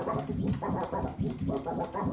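Turntable scratching: a vinyl record pushed back and forth under the needle, cutting up a vocal sample ('rock') in quick, choppy strokes.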